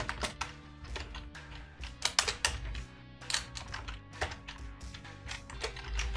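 Typing on a computer keyboard: a run of irregular keystroke clicks, with soft background music underneath.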